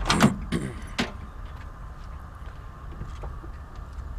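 A short throaty vocal sound, then a single sharp click about a second in from a car door's chrome push-button handle and latch being worked, with a low steady background after.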